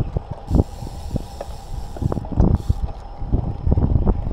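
Riding noise of a road bicycle rolling along an asphalt road, picked up by an action camera worn on the rider: low wind and road rumble with many irregular bumps and rattles.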